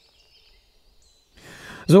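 A man's audible in-breath through the lapel microphone about a second and a half in, just before he speaks again. Faint high bird calls come before it.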